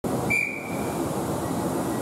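Siemens Desiro Class 450 electric multiple unit standing at the platform, with a steady low hum from its equipment. A single high, whistle-like tone sounds about a third of a second in and fades within about half a second.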